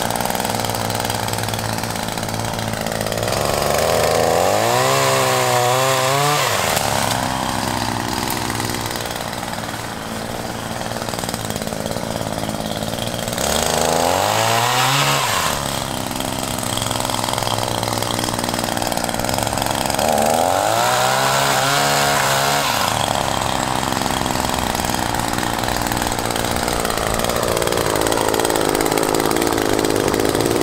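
Echo PAS-2620 power pruner, a pole saw driven by a small two-stroke engine, running at the end of its pole while cutting overhead branches. The engine settles back between cuts and revs up and back down three times, about ten seconds apart.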